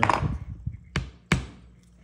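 Hammer tapping a small 4d nail into a pine board: light, sharp taps, two close together about a second in.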